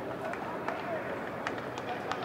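Footballs being kicked in a passing drill, a handful of sharp strikes through the moment, over distant shouts and calls from the players.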